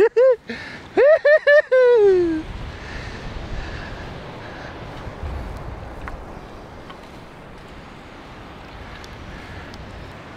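A man's voice in the first two seconds or so, a short run of high calls falling away at the end, then steady low wind rumble on the microphone with the surf behind it.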